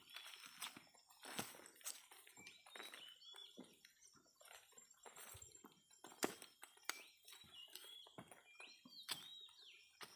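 Footsteps crunching on dry leaves and cut branches, in irregular faint crackles with a sharper snap about six seconds in. Short high bird chirps sound now and then, mostly in the second half.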